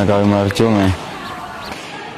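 A man's voice speaking for about a second, then a pause with only faint background sound.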